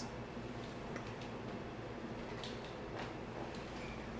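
Faint scrapes and soft ticks of a spatula folding thick batter against a stainless steel bowl, a few separate strokes over a low steady room hum.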